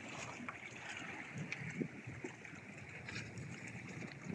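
Small sea waves lapping and splashing against shoreline rocks in a steady wash, with irregular low bumps of wind on the microphone.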